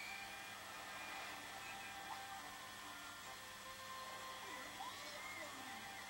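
Faint cartoon soundtrack played back from VHS over steady tape hiss and hum. A short whistled tweet comes right at the start, then faint music and sliding sound effects follow.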